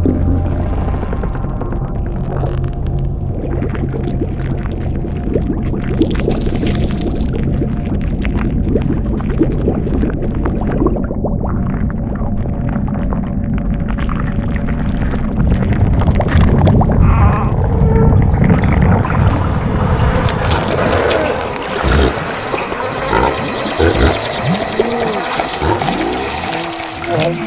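Dark, ominous horror-film soundtrack: low droning tones layered with liquid, gurgling sound effects. It grows louder and denser after the midpoint and turns harsher and brighter from about three quarters of the way in.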